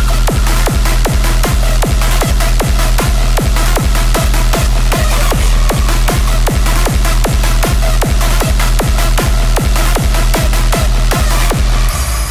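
Rawstyle hardstyle music: a heavy distorted kick drum hits on every beat at an even tempo under sustained synth tones. The kicks stop right at the end.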